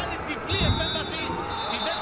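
Referee's whistle blown in one long, steady blast, stopping play, starting about half a second in. Players shout in an empty stadium, and a low thump comes just as the whistle begins.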